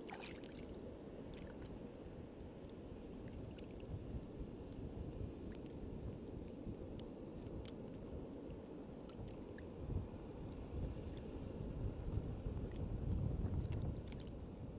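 Wind buffeting an action camera's microphone: a steady low rumble that grows gustier over the last few seconds, with a few faint clicks from handling.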